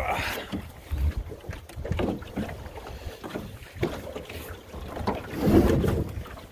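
Wind buffeting the microphone and water running along the hull of a Drascombe Lugger under sail, with scattered knocks and clunks as the centreboard is hauled up; the loudest clunk comes near the end.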